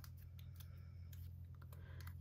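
Faint crinkling and small clicks of a paper sticker being picked and peeled off its backing sheet with the fingernails, over a steady low hum.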